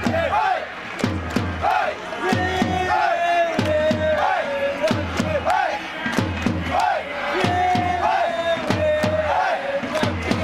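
Football supporters in the stands chanting in unison to a steady drumbeat, the same short melodic phrase repeating over and over.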